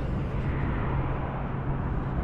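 Steady wind rushing over the microphone, with a low rumble underneath.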